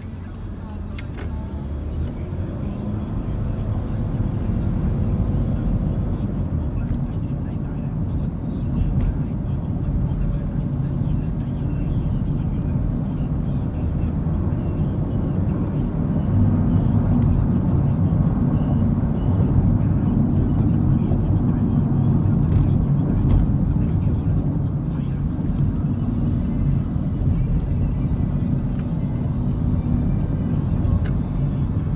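Road noise inside a moving car: a steady low rumble of engine and tyres that grows louder over the first few seconds as the car picks up speed, then holds. A voice and music sit faintly underneath.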